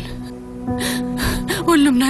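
Background music with held notes under a woman's tearful breathing: two sharp gasping breaths around the middle, then a voice near the end.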